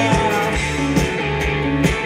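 Rock band playing live, with electric guitars and bass guitar carrying the sound over a steady beat of sharp drum hits.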